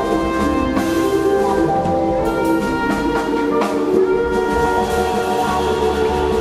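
Jazz band playing: trumpet and trombone holding notes over bass and drums, with cymbal and drum strokes.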